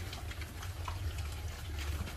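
Several pigs chewing fresh green leaves, with soft, irregular crunching clicks over a steady low hum.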